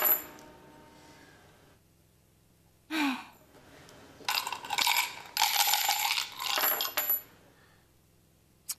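Coins cast from a tortoise shell for divination: they land on a cloth-covered table with a clink and ringing. About four to seven seconds in they are rattled in the shell and clink again. A short sigh comes about three seconds in.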